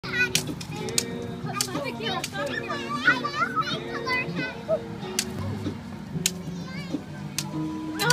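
Children's high voices calling and chattering over background music with long held notes, with scattered sharp clicks.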